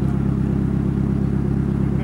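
Car engine idling steadily with a low, even rumble.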